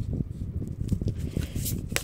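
A deck of tarot cards being handled and shuffled by hand: soft rustling of the cards, with a few crisp card clicks near the end.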